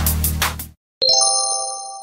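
Background electronic dance music with a heavy beat fades out. After a brief gap, a single bright chime rings about a second in and slowly dies away: a transition sound marking the start of the next exercise.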